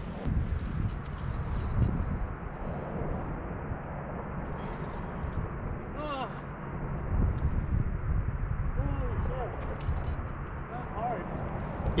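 Wind rumbling steadily on the microphone, with a few faint, distant voice-like calls about halfway through and near the end.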